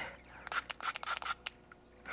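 A small piece of paper being crinkled and unfolded in the hands: a quick run of light crackles starting about half a second in and tailing off after about a second and a half.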